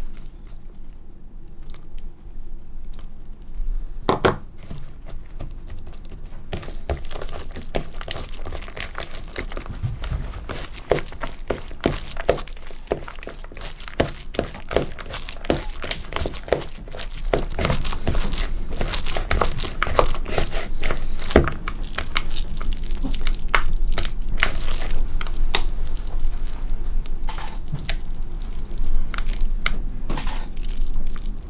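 Hands kneading and squeezing a crumbly food mixture in a plastic mixing bowl: a dense run of small crunching, crackling sounds. It grows louder a little past halfway through.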